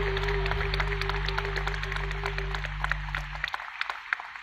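Live band (keyboard, electric guitars, bass, drums) holding a final sustained chord that dies away about three and a half seconds in, with the audience clapping throughout.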